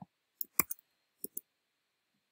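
About six short, sharp clicks from working a computer while pasting code into an editor, the loudest just over half a second in and a quick pair near the end.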